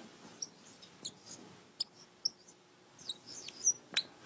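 Marker pen squeaking on a whiteboard in a string of short, high chirps as figures are written, with a sharp tick a little under two seconds in.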